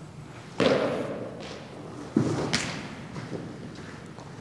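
Thuds of a baseball pitch thrown off a portable mound: a heavy thud about half a second in, then another about two seconds in followed by a sharp smack, from the pitcher's stride landing and the ball hitting the net.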